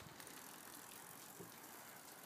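Near silence: a faint, even outdoor background, with a child's bicycle rolling over tarmac faintly heard.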